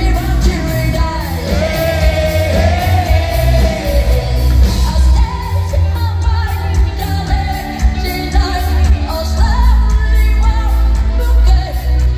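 A pop-rock band playing live with a female lead vocal over drums and heavy, loud bass, heard from among the crowd in a large hall.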